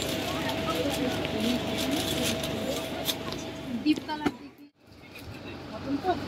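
Indistinct voices in a shop over a faint steady tone, briefly dropping to near silence about four and a half seconds in.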